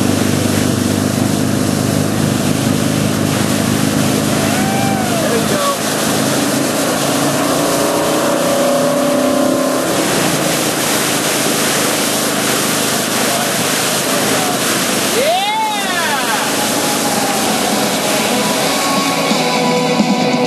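Towing boat's engine running steadily under the rushing water of the wake. Two short rising-and-falling voice calls, about five seconds in and again near fifteen seconds.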